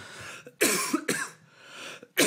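A man coughing into his hand close to a microphone, one loud cough starting about half a second in.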